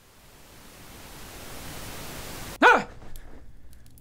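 A steady hiss swelling louder over about two and a half seconds, cut off by a single short, loud cry.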